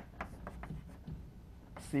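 Chalk writing on a blackboard: a quick string of short taps and scratches as the letters are stroked on.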